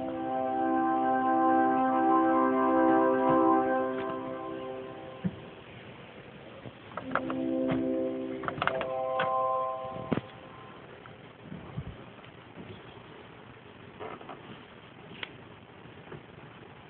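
Bedient mechanical-action (tracker) pipe organ sounding a held chord for about five seconds, then after a pause a second, shorter chord. Sharp clicks come around the second chord, and scattered fainter clicks follow once the organ stops, from the keys and stop knobs being worked.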